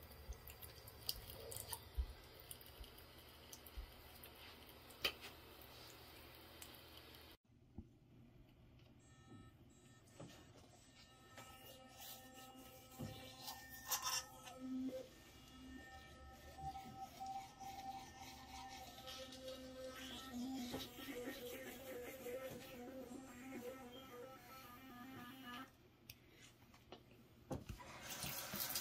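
Faint handling clicks at first. After a sudden break about seven seconds in, the WESMYLE UTC Pro sonic electric toothbrush buzzes steadily as it brushes teeth, its hum wavering and stuttering as the head moves in the mouth.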